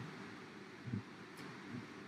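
Quiet room noise with faint rustling and one soft, low thump about a second in.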